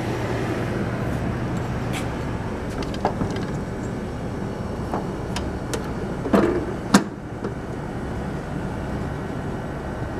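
The vending machine's refrigeration condensing unit, just started, running with a steady hum. Over it come scattered metal clicks and a couple of knocks, the loudest about seven seconds in, as the cabinet door is shut and latched.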